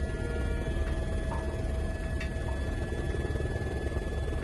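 Helicopter cabin noise heard from inside the aircraft in flight: a steady low rumble from the rotor and engine with a faint steady whine above it.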